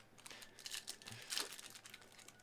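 Faint rustling and crinkling of a foil trading-card pack wrapper and cards being handled, with one brief louder rustle about one and a half seconds in.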